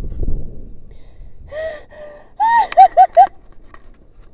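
A woman's high-pitched gasping whimpers of fright after a rope jump: two short cries about halfway in, then four quick, loud ones in a row. Wind noise on the microphone dies away at the start.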